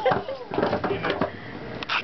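Indistinct voices without clear words, with several sharp knocks scattered through.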